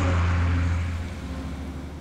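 A double-decker bus passing close and pulling away, its engine a loud low drone that fades after about a second as the bus moves off.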